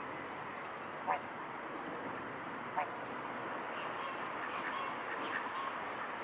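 Waterfowl calling: two short, loud calls about a second and a half apart, then a few fainter ones, over steady background noise.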